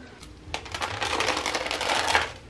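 Rustling with fine light clicks in a plastic pet carrier holding pet rats. It builds from about half a second in and fades out at the end.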